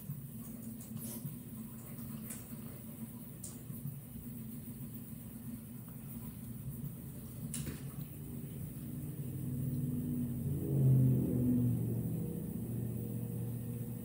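Airplane flying over: a low rumble that swells about eight seconds in, is loudest around eleven seconds, then eases off only a little.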